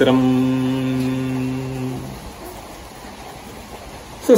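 A man chanting a Sanskrit verse on a level pitch, holding one long vowel for about two seconds before it stops.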